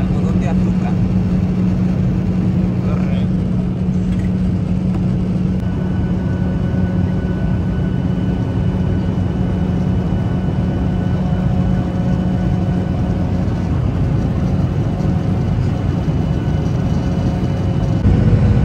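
Steady cabin noise of a passenger jet in descent: engine and airflow noise with a low steady hum that fades out about thirteen seconds in, and faint higher steady tones coming in from about six seconds in.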